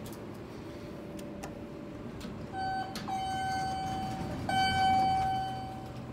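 Elevator arrival tone: a steady electronic tone starts about two and a half seconds in and holds, broken twice briefly, as the car reaches the floor.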